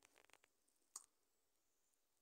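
Near silence: room tone with a few faint clicks, a quick cluster in the first half-second and one more about a second in.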